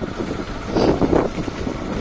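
Motorcycle riding along a road, its engine running under uneven wind buffeting on the microphone.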